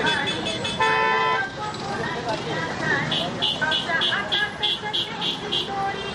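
A vehicle horn sounds one short steady blast about a second in. From about three seconds, a high-pitched horn beeps in a rapid run of about nine short toots. Crowd voices and traffic noise run under both.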